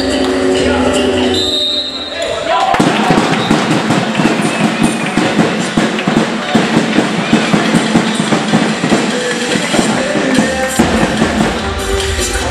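Music playing over a sports hall's speakers, its bass dropping out about two seconds in; from then on a dense run of sharp taps, with a handball bouncing on the hall floor.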